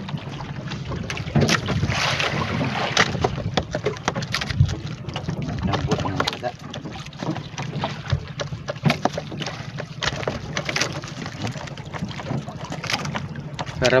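Small wooden outrigger boat afloat at sea: water slapping against the hull and wind on the microphone, with scattered knocks and a steady low drone underneath.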